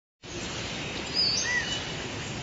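Outdoor ambience: a steady background hiss with two short bird chirps a little after a second in.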